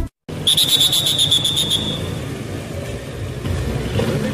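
A motorcycle engine running as it rolls up, with a trilling whistle blast starting about half a second in and lasting over a second: a traffic officer's whistle signalling the rider to stop.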